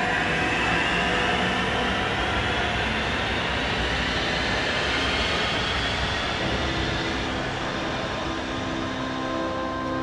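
Sound Transit Link light rail train pulling out of the station, its motor whine rising steadily in pitch as it accelerates, over the rumble of wheels on the rails. The sound slowly fades as the train moves away.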